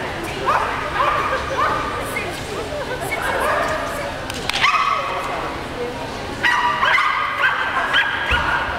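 A small dog barking in repeated high-pitched yaps, a dozen or so with short gaps between them, coming more quickly near the end.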